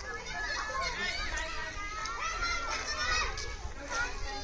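Voices of a group of children and adults, several talking and calling out at once in an overlapping babble.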